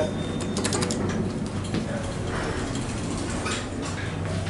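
Modernized traction elevator car: a short high beep as a car button is pressed, then a quick run of clicks about half a second in as the door equipment works. A steady low hum runs under it as the car travels.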